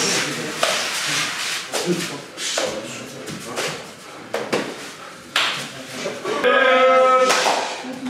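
Sumo practice bout: slaps, thuds and scuffing of wrestlers grappling on the clay ring, in short noisy bursts. A long shouted call comes near the end.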